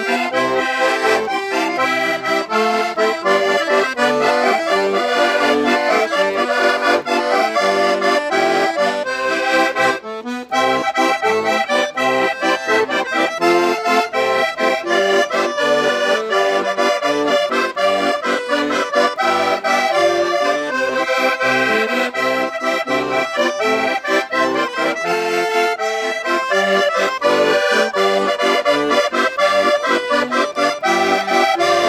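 A Portuguese concertina (diatonic button accordion) and a chromatic button accordion playing together: a lively traditional Portuguese dance tune with a steady beat. There is a brief break in the playing about ten seconds in.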